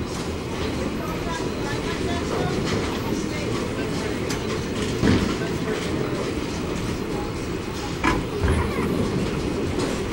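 Bowling alley din: the steady low rumble of bowling balls rolling down the wooden lanes, with sharp knocks about five and eight seconds in.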